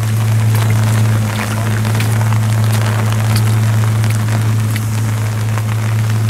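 Heavy rain falling, with many sharp drop clicks close to the microphone, over a steady low hum.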